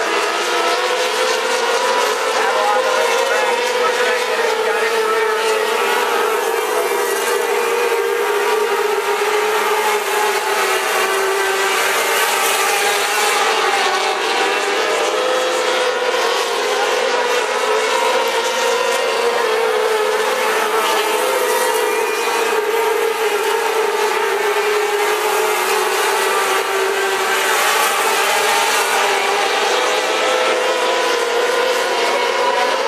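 Several micro sprint cars' 600cc motorcycle engines running at high revs as the cars circle the dirt oval, a loud, continuous engine drone whose pitch rises and falls gently as the cars pass and the drivers lift and accelerate.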